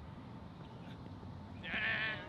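A player's short, wavering, high-pitched shout near the end, over a low background of outdoor noise.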